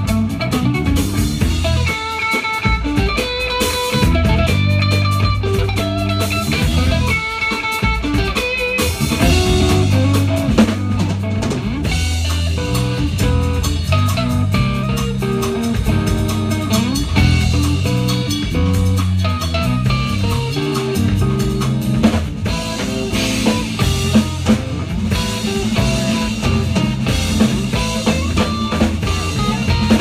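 Amplified electric guitar played live, with a steady drum beat underneath.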